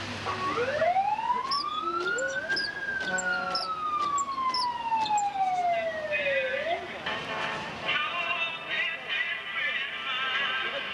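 An emergency vehicle's siren gives one long wail, rising for about two seconds and then slowly falling for about four. Near the end, music with a wavering tune comes in.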